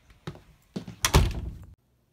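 A light click, then a loud, dull thunk of a door being knocked or bumped about a second in; the sound cuts off abruptly just before the end.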